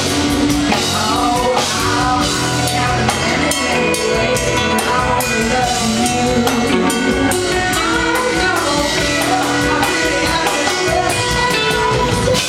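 Live funk-rock band playing a bluesy number: electric guitars, bass and drum kit, with a woman singing lead over them.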